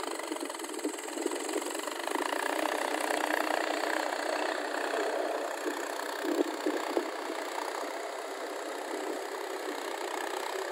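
Mahindra tractor's diesel engine running steadily as the tractor works through wet paddy mud, swelling a little in the middle, with a few short knocks near the middle.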